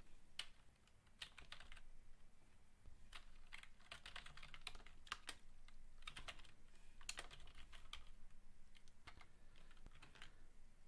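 Faint computer keyboard typing: short runs of quick keystrokes with brief pauses between them.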